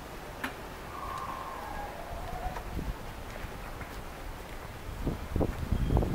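Wind buffeting a handheld camera's microphone in low rumbling gusts near the end, over a steady low outdoor rumble.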